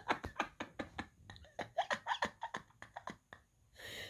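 A person's quiet, breathy, stifled laughter in rapid short pulses, dying away towards the end.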